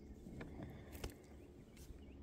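Quiet outdoor background with a few faint small clicks, one about half a second in and a slightly sharper one about a second in.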